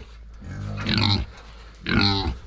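Young pigs in a pen calling: one call just under a second long starting about half a second in, and another beginning near the end.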